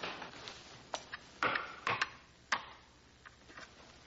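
Game pieces being moved and set down on a wooden game board: several sharp, irregular clicks and clacks.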